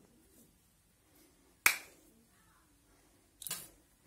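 A glass Bepanthen ampoule snapped open at its neck by hand: one sharp crack about a second and a half in, followed near the end by a shorter, softer burst of noise.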